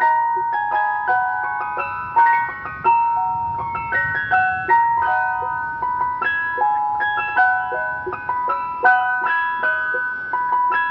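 Ice cream van chime tune playing: a tinkly melody of short, quick notes at an even pace.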